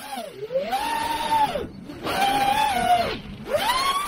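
FPV quadcopter's brushless motors and propellers whining under throttle, the pitch rising, holding and dropping off in surges: up about half a second in, down near the two-second mark, up again, down past three seconds, then climbing again at the end, with a rush of prop and wind noise.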